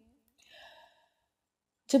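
A short, faint intake of breath by the speaker about half a second in, between sentences, with silence around it.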